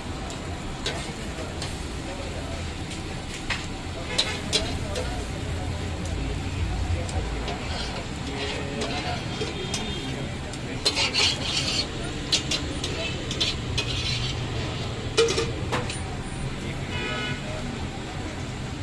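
Metal knife and spatula scraping and tapping on a large flat iron griddle, with scattered sharp clinks, over a light sizzle and a steady low rumble.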